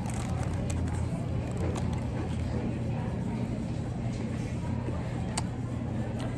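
A person chewing a mouthful of empanada, with faint mouth clicks, over a steady low background hum.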